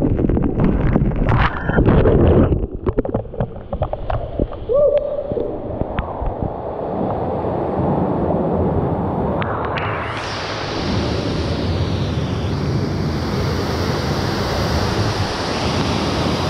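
Water rushing and sloshing around a rider sliding down an enclosed water-slide tube, with scattered knocks against the tube, then a steady rush of splashing water in the pool. From about ten seconds in a brighter hiss of falling water from a waterfall joins it.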